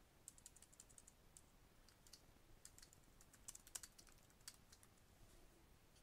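Faint computer keyboard typing: irregular keystrokes, some in quick runs, as a line of code is typed.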